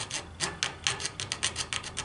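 Junior hacksaw cutting into a thin plastic case panel in short, quick rasping strokes, about seven a second.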